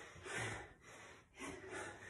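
A person breathing hard while exercising, out of breath between reps. Two short breaths are heard, one about half a second in and one near the end.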